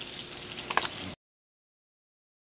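Bacon-wrapped asparagus rolls sizzling in sunflower oil in a frying pan, with a single faint click a little under a second in. The sound cuts off abruptly just after a second.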